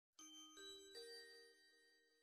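Faint bell-like chime notes: three struck in quick succession, each higher than the last, ringing on and fading away. This is the intro of a music track.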